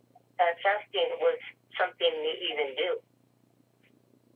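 A person talking over a telephone line for about two and a half seconds, the voice thin as through a phone, over a steady low hum.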